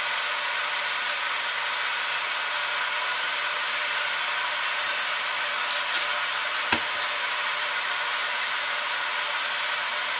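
Steady hiss of a workshop machine running in the background. About six seconds in there is a short scratchy rustle, and a single sharp click follows soon after.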